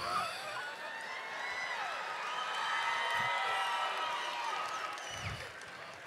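Theatre audience laughing, with scattered whoops, swelling in the middle and fading near the end.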